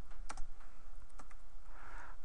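Typing on a computer keyboard: irregular separate keystrokes, several a second, as a short word is typed, over a low steady hum.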